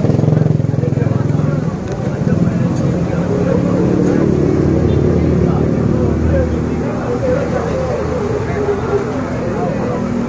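A motor vehicle's engine runs with a loud, steady, even-pitched drone, with people's voices underneath.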